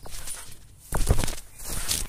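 A child bouncing on a trampoline: thuds of her body landing on the trampoline mat, with a loud deep landing about a second in and a smaller one near the end, as she comes down on her back from a failed front flip.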